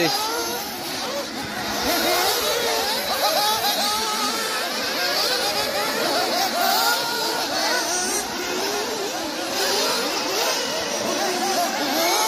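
Several 1/8-scale nitro off-road buggies racing. Their small two-stroke glow-fuel engines keep rising and falling in pitch as they accelerate and brake through the track, overlapping one another.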